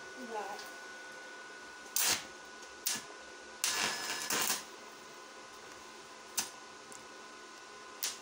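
Deko 200 inverter welder's stick-welding arc being struck: short bursts of arc crackle about two and three seconds in, then about a second of crackling arc near the middle and a brief spark later. The arc keeps breaking off instead of holding, and the steep electrode angle is blamed for it.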